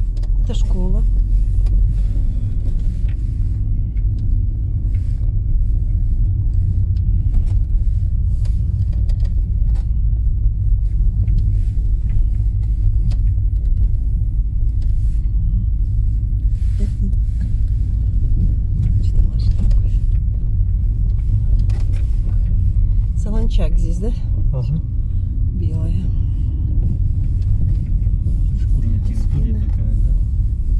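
Car interior road noise: the engine and tyres giving a steady low rumble as the car drives along a rough village road, heard from inside the cabin.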